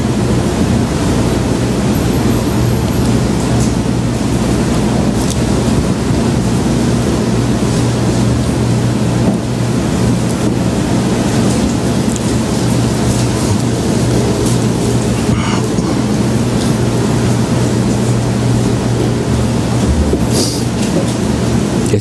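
Loud, steady rumbling noise with a low hum running under it and a few faint clicks scattered through.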